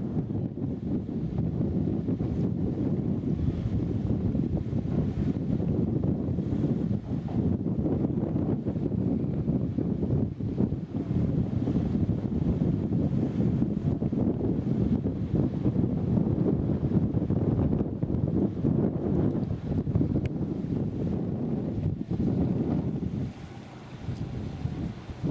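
Wind buffeting an outdoor microphone: a steady low rumble that swells and falls in gusts, easing briefly near the end.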